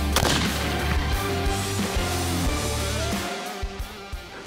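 Background music with a single rifle shot a moment after the start, followed by a short echo; the music fades out shortly before the end.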